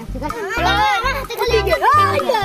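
Children's voices calling out over background music with a stepping bass line.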